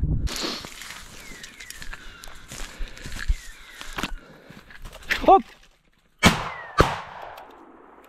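Two shotgun shots about half a second apart, fired at a flushing woodcock.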